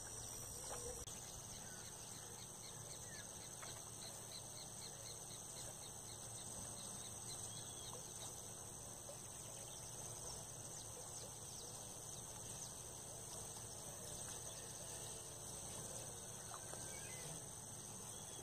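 A faint, steady chorus of insects chirring, with a little open-air background noise.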